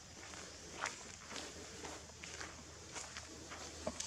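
Footsteps on a stone ledge, short irregular scuffs and taps about two a second, the sharpest about a second in, over faint steady outdoor background noise.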